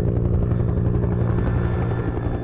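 Firefighting helicopter flying with a water bucket slung beneath it, its rotor beating in a steady, rapid chop.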